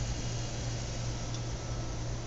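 Cooling fans of an open, running dual-Xeon server, including the CPU cooler fans and a fan over the memory, whirring steadily with a low hum.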